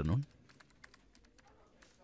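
Faint, irregular clicking of computer keyboard typing, after a man's voice on a telephone ends at the very start.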